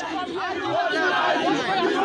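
Crowd of protesters talking and shouting over one another, many voices at once.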